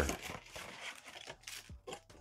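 Cardboard trading-card blaster box being torn open by hand, its flap pulled back with a faint scratchy tearing and rustle.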